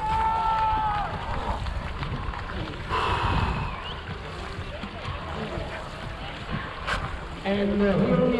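Wind buffeting an action-camera microphone and water splashing around a dragon boat whose crew is sitting still with paddles in the water, not stroking. Distant voices call, one holding a long note in the first second, and there is a single sharp click about seven seconds in.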